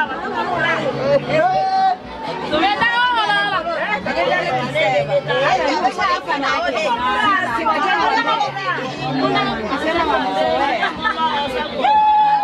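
Many voices talking and calling out over one another at once: loud, lively group chatter.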